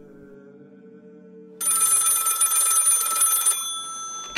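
Low sustained chant-like music notes, then about one and a half seconds in a telephone bell rings once for about two seconds and stops.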